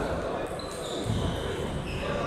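Table tennis balls knocking on tables and bats during rallies, with voices in a large hall.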